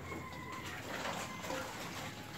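Faint bird calls: a few thin, high notes in the first second.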